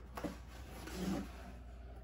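Cardboard shipping box being opened, its lid flaps pulled up: a short sharp sound near the start and a louder scraping rustle about a second in, over a low steady hum.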